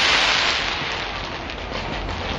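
Fireworks going off in a dense crackling hiss, loudest at the start and easing off over the two seconds.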